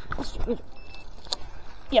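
Jangling, rustling handling noise with scattered clicks and knocks as an angler hurries to his fishing rod, with a short shout about half a second in.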